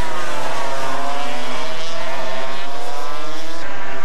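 250cc two-stroke Grand Prix road-racing motorcycles at full race pace, their engine notes dipping in pitch and then climbing again as the bikes go through a corner.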